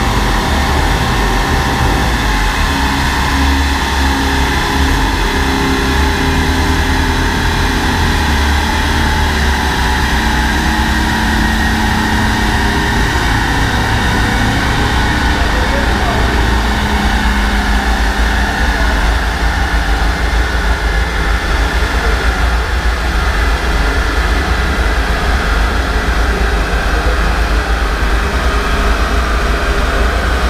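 Car engine idling steadily on a chassis dynamometer between runs, with no revving, under the steady rush of the dyno's large cooling fan.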